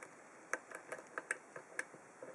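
A run of small, irregular metallic clicks as a steel Euro hook pick works the pin stacks of a 40 mm five-pin brass padlock under heavy tension. The picking leaves a pin overset.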